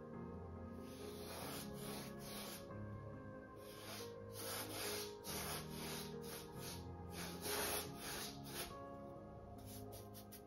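Paintbrush strokes rubbing across a stretched canvas, a run of short sweeps about one or two a second, over soft background music.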